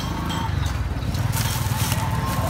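Small motorbike engine running close by, a low putter that grows a little louder as the bike comes near.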